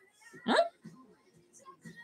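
A woman's single short, rising vocal "huh?" about half a second in, then a quiet stretch with only faint background sound.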